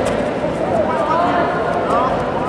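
Indistinct, overlapping voices of spectators and coaches calling out in a large, echoing sports hall, with a few faint short clicks.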